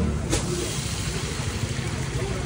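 A motor vehicle's engine running steadily close by, a low pulsing rumble, with one sharp click about a third of a second in.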